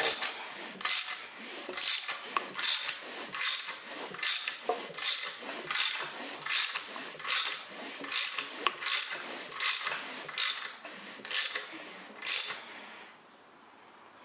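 Hand ratchet clicking in repeated strokes, about two a second, as a small-block Chevy 350 is turned over by hand to cycle a valve open and closed. The clicking stops shortly before the end.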